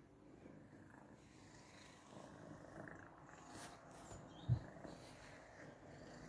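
Domestic cat purring faintly and steadily as it rubs against a person's leg. A short low thump about four and a half seconds in.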